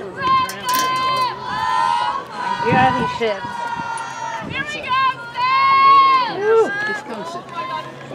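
Several high-pitched young female voices yelling a cheer, many of the calls drawn out long and overlapping, as a softball team cheers on its batter.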